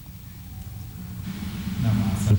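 A pause between speakers, filled by a low steady hum and faint hiss of room tone. The hiss grows slightly louder in the second half, and a man starts to speak at the very end.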